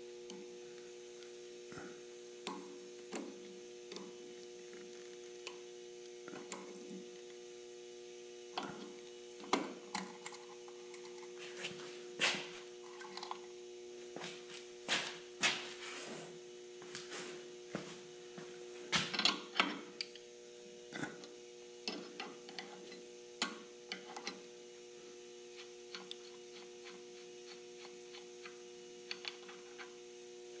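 Steady electrical hum with irregular small clicks and metallic taps from pliers working a cap off a fuel-injection fitting, busiest in the middle.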